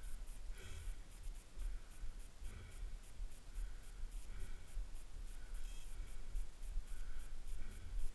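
Faint, short breathy hisses recurring about once a second, like a person breathing near the microphone, over a low wind rumble on the microphone.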